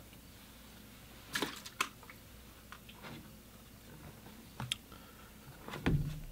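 Water container being handled: a few light clicks and knocks, then a louder knock near the end as the container of fresh rinse water is set down on the table.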